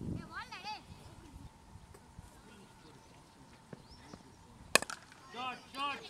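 A single sharp crack of a hard cricket ball striking something, about three-quarters of the way through, followed by players shouting calls.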